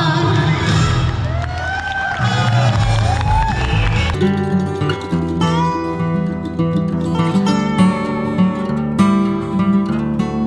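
A song with singing plays, then about four seconds in it cuts abruptly to plucked acoustic guitar music.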